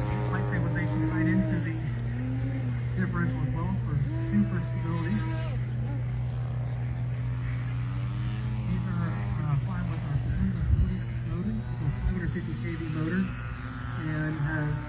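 Voices talking over a steady, unchanging low hum.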